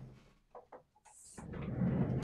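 Faint clicks and rustling of someone moving about and handling things while fetching an ink pad, with a short hiss just after a second in and louder rustling noise from about a second and a half in.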